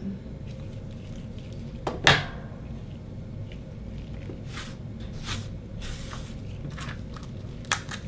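Gloved hands handling a metal caliper and oyster shells on a bamboo cutting board. A sharp knock about two seconds in is the loudest sound, followed by soft rustling and a few light clicks near the end.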